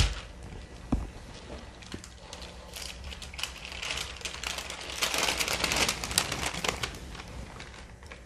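Wax paper crinkling as it is handled and peeled off a wooden letter wet with acrylic paint, a dense crackle strongest in the middle seconds. Two soft knocks come first, one at the start and one about a second in.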